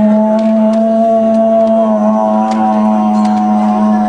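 A man's voice holding one long, steady vocal drone, a single sustained note whose vowel colour shifts about two seconds in, as part of a sound-poetry performance.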